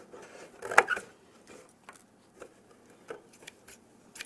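Scissors cutting into the thin cardboard of a cereal box: one louder crunching cut just under a second in, then a few faint snips and clicks.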